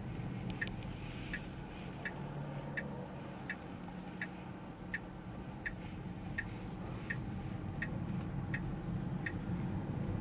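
Tesla turn signal ticking steadily, about one click every 0.7 seconds, signalling a left turn, over a low steady cabin hum.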